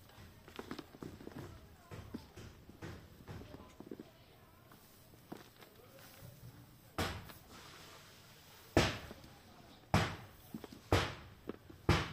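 Hands turning a dry mix of soil, rice husks and charcoal in a plastic tub, a faint crackling rustle. From about seven seconds in, loud sharp knocks come roughly once a second, from building work nearby.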